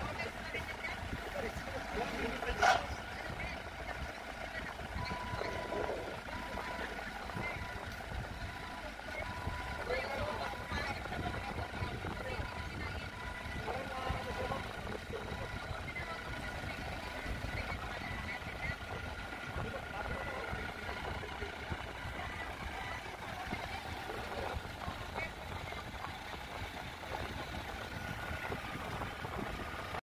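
Forklift engines running at a distance: a low, steady rumble under faint, indistinct voices, with one sharp click about three seconds in.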